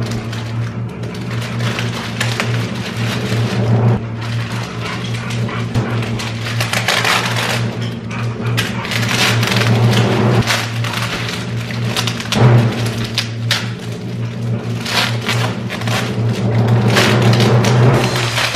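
Background music with a steady bass line and a regular beat.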